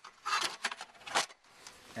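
Snap-in extruded panel stop scraping and clicking against a sliding door's frame as it is rotated into the jamb cavity: a few short scrapes, then a sharper click a little past a second in.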